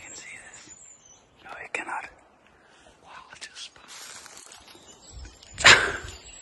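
Hushed whispering between two people stalking through a forest, with scattered rustles and a short, loud noise a little before the end.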